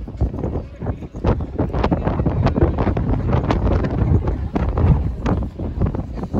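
Wind buffeting a phone microphone high up on an open-air skyscraper observation deck: a loud low rumble broken by irregular gusts and pops.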